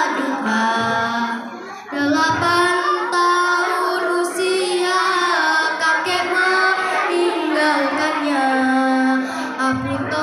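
A girl's voice singing a slow, held melody into a microphone and over loudspeakers, with a short break for breath about two seconds in.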